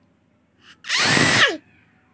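A toddler's short, harsh shriek about a second in, rough and noisy rather than clear, trailing down in pitch at the end.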